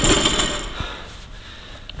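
Loaded steel barbell and plates ringing and rattling as they settle after being dropped onto the squat rack's safety arms, fading away within the first second, followed by a few light knocks.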